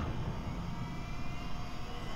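A steady, low roaring rumble with faint held tones above it: the sound-design drone laid under an animated fiery title sequence.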